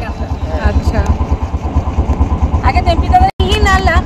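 Engine of a wooden river boat running with a steady, rapid low thumping, about ten beats a second.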